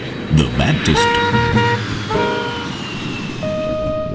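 Intro jingle with brass-like horn notes: a few short toots, then held notes, over a faint tone that slowly falls in pitch.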